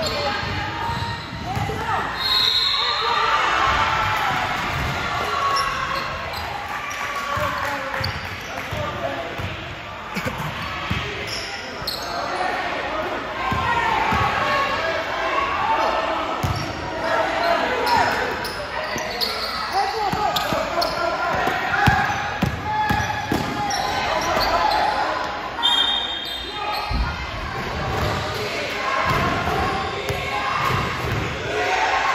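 Basketball bouncing and thudding on a gym court during play, with voices calling out, all echoing in a large hall.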